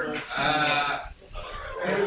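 Indistinct voices of people talking, with a short pause a little past the middle.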